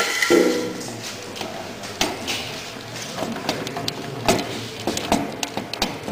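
Scattered knocks and clinks of tools and metal parts being handled, several separate sharp strikes spread a second or so apart.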